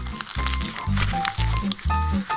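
Plastic lollipop wrapper crinkling in quick little crackles as it is bitten and pulled at with the teeth, over background music with a steady beat.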